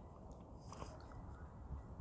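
Faint mouth and tongue sounds of someone tasting a drink he finds foul, with one short hiss a little before the middle.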